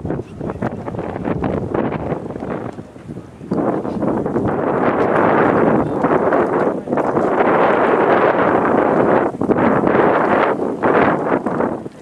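Wind buffeting the camera microphone in uneven gusts, much louder from about three and a half seconds in, with brief lulls.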